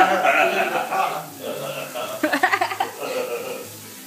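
Men laughing and talking indistinctly in bursts, with a quieter stretch in the middle.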